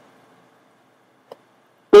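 Near silence, broken by one faint, very short click about a second and a quarter in; a man's voice starts right at the end.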